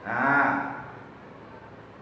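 A man's single drawn-out vocal sound, under a second long, rising and then falling in pitch.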